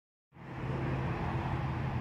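A steady low mechanical hum with a few constant low tones, like background engine or traffic noise, starting just after the sound comes on.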